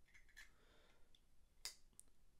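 Faint metallic clicks and light scraping as a Zippo Bit Safe insert slides down into a Zippo armor lighter case, with one sharper click about a second and a half in.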